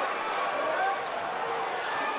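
Arena crowd noise: a steady din of many voices, with faint indistinct shouts above it.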